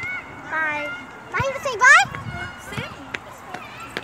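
Speech: high-pitched children's and women's voices chatting, too unclear to make out, with a short rising call about two seconds in.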